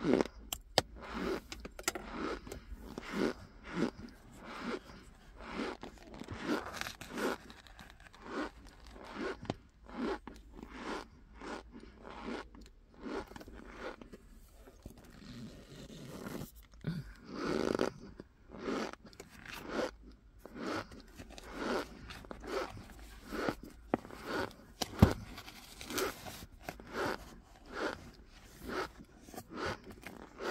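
Cornstarch squeaking and crunching as it is scooped with a spoon and pressed into packed clumps, in a run of short crunchy strokes, with one sharper crack late on.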